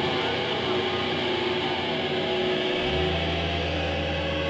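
Live heavy metal band: distorted electric guitar ringing in a dense, sustained wash, with a low held bass note coming in about three seconds in.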